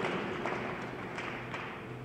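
Faint room noise of a large hall in a pause between speech, with a few soft taps.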